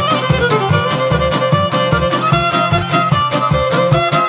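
Bosnian izvorna folk music, instrumental: a violin plays the lead melody over šargija accompaniment, with a steady beat and bass.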